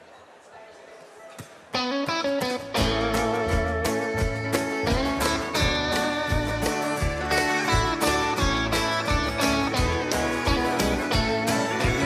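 Live country band starting the instrumental intro of a song. An electric guitar comes in a little under two seconds in, and bass and drums join about a second later with a steady beat.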